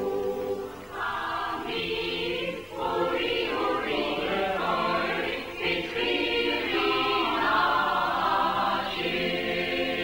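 A choir singing in held, sustained chords that change every second or so.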